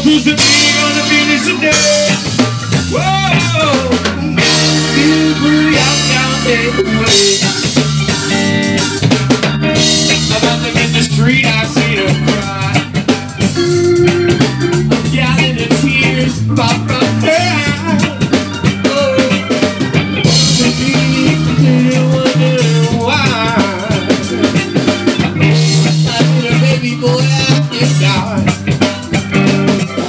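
Live reggae band playing an instrumental passage with no singing: drum kit, bass and guitar, with a lead line wavering and gliding in pitch over the top.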